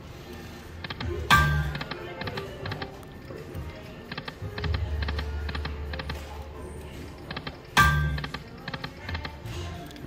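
Eyes of Fortune Lightning Link pokie machine playing two $5 spins: a loud sound as each spin starts, about a second in and again near eight seconds, then a run of short clicks as the reels stop, over the machine's game music.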